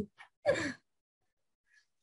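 Mostly dead silence on a gated video-call line, broken about half a second in by a person's short breathy vocal sound.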